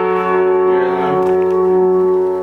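One piano chord ringing on after being struck, several notes held steady together.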